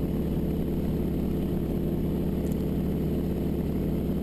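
North American AT-6D's nine-cylinder Pratt & Whitney R-1340 Wasp radial engine and propeller droning steadily in flight, heard from inside the cockpit.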